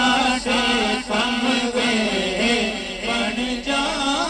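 Male voices singing a Punjabi naat, unaccompanied: a lead singer's ornamented melody over a steady low note held by the backing chorus.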